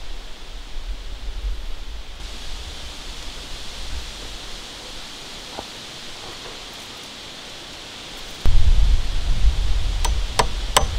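Steady outdoor hiss with wind buffeting the microphone as a low rumble. The rumble turns suddenly loud about eight and a half seconds in.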